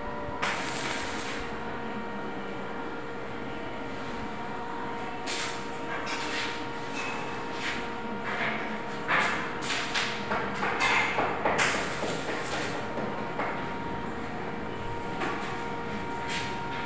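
Metalwork on a steel stair railing: scattered knocks and rattles on the steel tubing, coming thickest about nine to twelve seconds in, over a steady background hum.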